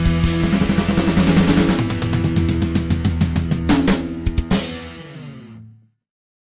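Punk rock band with drum kit and distorted guitar playing the song to its close: a few last loud drum hits about four seconds in, then the final chord dies away and the track cuts to silence just before the end.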